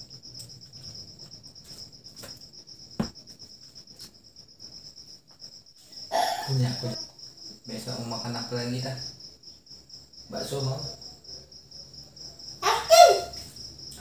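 Steady high-pitched insect chirping, an even fast pulsing that runs on without a break, under short stretches of a man's low voice talking from about six seconds in. A single sharp click about three seconds in.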